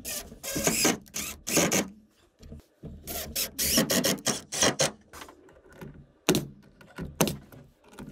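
Cordless drill driving screws into wood, in several short runs of about a second each. Near the end come a few sharp single shots of a pneumatic nailer.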